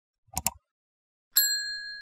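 Two quick clicks as an on-screen cursor presses a button, then a bright chime struck about a second and a half in that rings on and slowly fades: the notification-bell sound effect of a subscribe animation.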